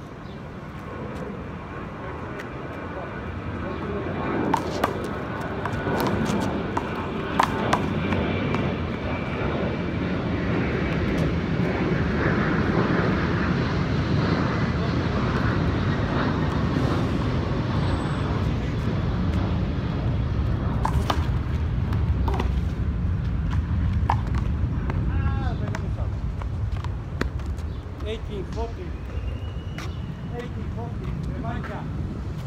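Low rumble of an aircraft passing overhead, swelling over about ten seconds and slowly fading. A few sharp knocks sound through it.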